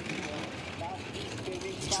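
Two-man bobsled running through a curve of the ice track: a steady rumble and hiss of its steel runners on the ice, with a few brief voices over it.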